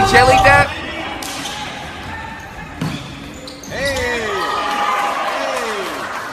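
A basketball bouncing a few sharp times on a gym floor, with a voice over it.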